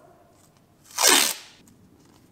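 A strip of masking tape ripped quickly off its roll in one short, loud rip about a second in.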